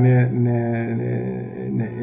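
A man's voice holding one long vowel at a steady pitch for about two seconds, a drawn-out hesitation sound in the middle of a sentence.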